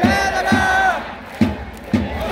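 Organised cheering section at a Japanese pro baseball game: fans chanting in unison over a drum beating about twice a second, with long held notes. It dips for a moment partway through.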